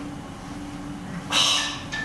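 A pause with a steady low hum in the hall's sound system, then one short breathy hiss about a second and a half in, an exhale into the lectern microphone.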